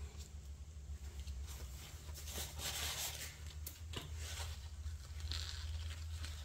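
Faint handling noise: a few small clicks and rustles from gloved hands on a silicone mold tray, over a steady low hum.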